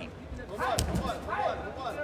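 A man's voice talking over the arena sound of a fight broadcast, with a single sharp thump a little under a second in.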